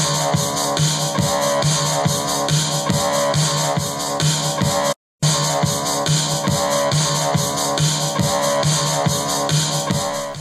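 Beat-driven music with a strong bass line and steady drum beat, played loud through an RCF ART 745-A two-way powered speaker (15-inch woofer, 4-inch compression driver) and picked up by the camera. The sound cuts out for a moment about five seconds in, where the flat-EQ demo gives way to the one with the bass-and-treble 'smile' boost.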